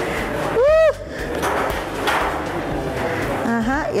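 A short, loud vocal exclamation about half a second in, its pitch rising then falling, over a steady murmur of room noise. Speech begins again near the end.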